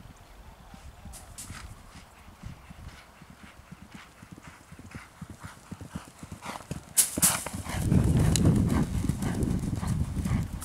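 Hoofbeats of a racehorse galloping on turf. They are faint at first and grow much louder from about eight seconds in as the horse comes close. A couple of sharp knocks come just before the loud part.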